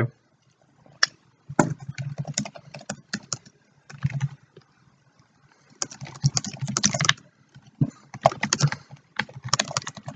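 Typing on a computer keyboard: bursts of quick keystrokes broken by pauses of about a second.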